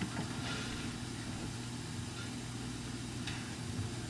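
A steady low mechanical hum with a constant pitch.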